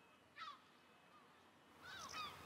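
Near silence, broken about half a second in by one short, faint bird call, with another starting near the end.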